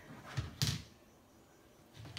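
A serving spoon knocking twice against the cookware while food is dished out, two short knocks about a quarter of a second apart.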